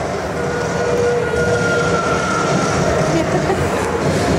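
Indoor dark ride vehicle running steadily along its track, a continuous noise with a low rumble and a faint held tone through the middle.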